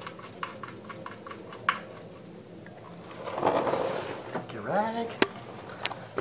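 Small metallic clicks and ticks as the oil drain plug is threaded back into a Toyota Camry's oil pan by hand. A rustle follows a little past halfway, then a brief voice sound and one sharp click near the end.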